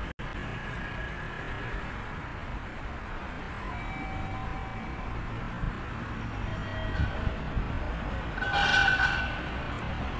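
Steady low background rumble of a busy railway-station area, with faint held tones here and there. About eight and a half seconds in comes a brief, louder sound with several pitches at once.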